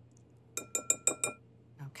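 A metal teaspoon tapping a glass bowl about six times in quick succession, each clink ringing briefly, as spoonfuls of cornstarch are knocked into the bowl.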